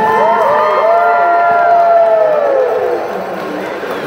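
Crowd cheering, with many high-pitched children's shouts and whoops that rise and fall over one another, loudest in the first two seconds and dying down near the end.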